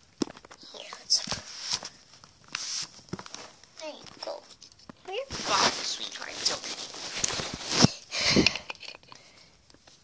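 Knocks and clicks of a plastic toy doll seat and doll being handled, with short bits of quiet speech in between.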